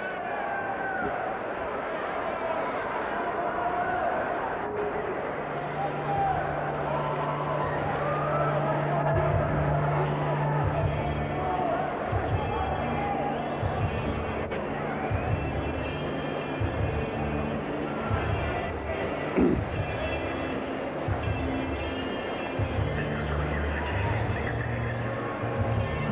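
Arena music over the PA: a bass line stepping from note to note, with a steady tone part higher up, over the chatter of a hockey crowd.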